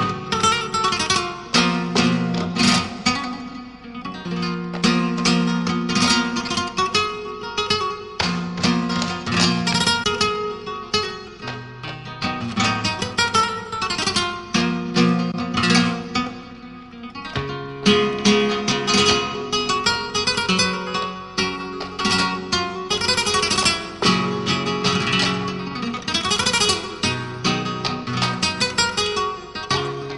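Flamenco guitar playing tarantos: strummed chords alternate with plucked passages and ringing notes.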